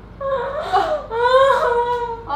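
A small dog whining in two drawn-out calls, the pitch sliding up and down, the second call longer than the first.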